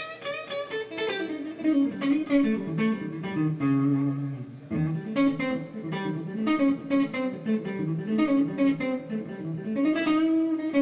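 Electric guitar playing a fast single-note lick that moves up and down a six-note synthetic scale built from two major triads a flat fifth apart, with one longer low note near the middle.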